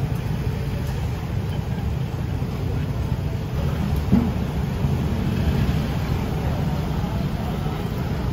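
Steady low rumble of city street traffic, with no clear single event.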